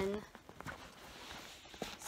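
Soft rustling and a few small knocks of someone rummaging through a fabric travel bag, pulling an item out.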